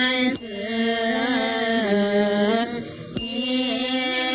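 Buddhist nuns chanting in unison on long, slowly changing held notes, with a short breath pause near three seconds. Two sharp metallic strikes, one just after the start and one right after the pause, each leave a high ringing tone.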